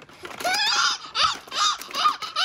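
A young child squealing in about three high-pitched bursts in quick succession.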